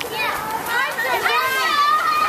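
Many young children talking over one another in high voices, with no clear words.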